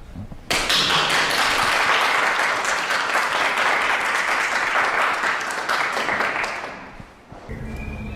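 Audience applauding in a hall: many hands clapping, starting abruptly about half a second in and dying away near the end.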